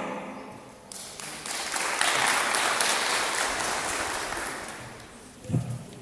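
Audience clapping, swelling about a second in and dying away over the next few seconds.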